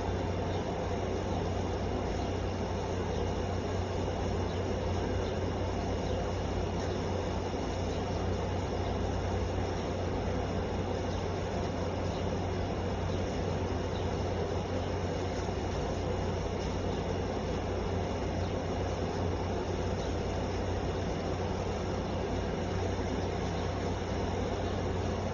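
Steady machine hum: a constant low drone with a faint high whine over an even noise, unchanging throughout.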